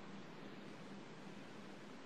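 Faint steady hiss with a low hum under it: background noise of an open video-call microphone.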